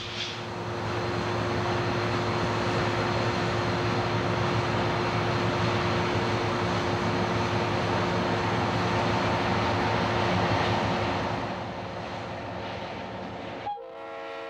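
Diesel-electric road-switcher locomotive of the Central California Traction rolling slowly past with its engine running, a steady rumble with a thin steady whine over it. It is loudest until about eleven seconds in, then eases off, and the sound cuts out briefly just before the end.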